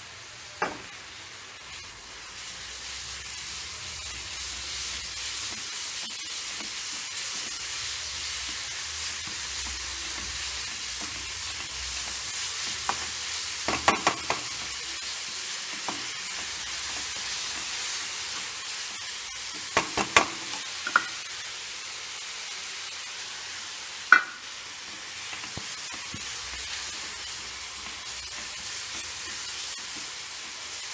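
Grated coconut and melted jaggery sizzling in a pan as they are stirred, with the spatula now and then knocking sharply against the pan, several times in quick clusters.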